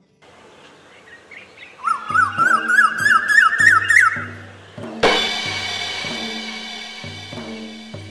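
Intro music with a pulsing bass beat. A run of about ten quick bird-like chirps climbs in pitch between about two and four seconds in. About five seconds in comes a sudden crash that rings out slowly.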